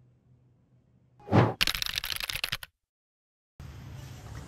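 Edited intro sound effects: a short whoosh about a second in, followed at once by about a second of rapid crackling clicks that stop suddenly. After a brief silence, background music starts near the end.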